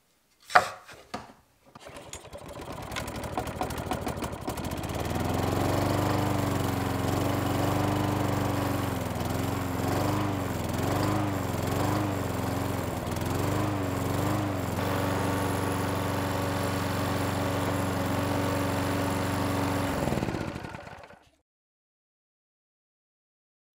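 A couple of knocks as plywood pieces are set on the table, then a drill press motor running, its pitch dipping about six times in a row as the bit is fed into the plywood. It then runs steady and is switched off near the end, winding down.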